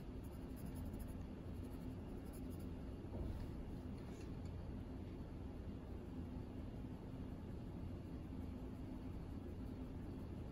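Faint scratching of a 2B graphite pencil on paper: the lead is first rubbed round on the corner of the sheet, then shades the lightest square with barely any pressure.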